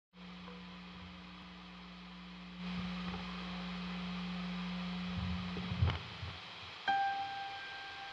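Steady hum and hiss from an electric guitar's rig through a Vox Tonelab ST amp modeller on a distorted setting, getting louder about two and a half seconds in, with a few light knocks near six seconds. Near the end a single sustained piano note sounds: the start of the song's piano intro.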